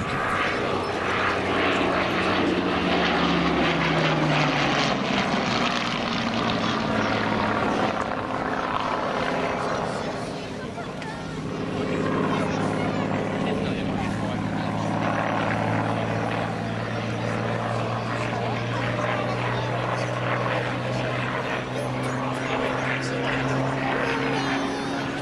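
Hawker Hurricane's Rolls-Royce Merlin V12 engine and propeller as the fighter flies a display pass. The engine note drops in pitch as it goes by a few seconds in. The sound fades briefly near the middle, then builds again with the pitch slowly rising.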